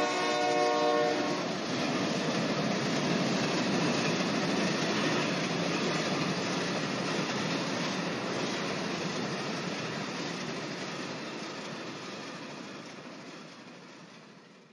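A held, horn-like chord of several steady tones that cuts off about a second in, followed by a steady rushing noise that slowly fades away.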